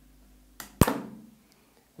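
A short hiss followed by a single sharp click a little under a second in, which dies away over about half a second against quiet room tone.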